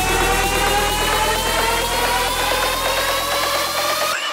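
Electronic dance music build-up: a synth riser climbing steadily in pitch over fast repeated notes, with the low bass fading away near the end.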